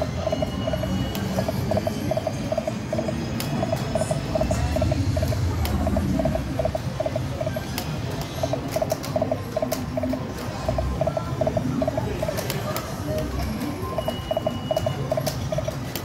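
A video slot machine playing its electronic reel-spin effects: runs of quick, pitched blips that repeat spin after spin. The machine's jingle music sounds over a low background hum.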